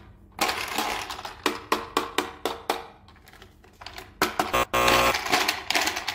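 Toy packaging and plastic toy parts being handled during an unboxing: a run of sharp clicks and crinkles, then a denser rasping burst about four seconds in.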